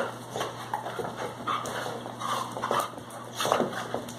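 Two dogs play-fighting, with short, irregular dog vocal noises and scuffling throughout, loudest near the end.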